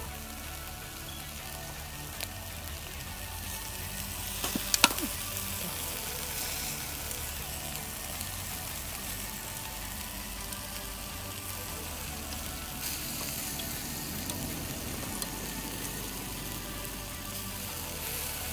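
Chicken drumsticks sizzling on a wire grill over charcoal, a steady hiss, with a few sharp clicks about five seconds in.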